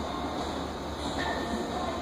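Steady background noise with a low hum, even throughout.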